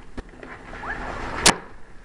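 Cardboard pie box being handled and worked open: rustling with a few light clicks and one sharp snap about one and a half seconds in.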